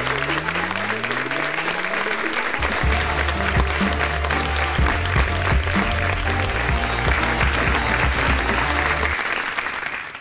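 Studio audience applauding over closing music: a rising tone sweeps up in the first couple of seconds, then low bass notes come in about two and a half seconds in and run until shortly before the end.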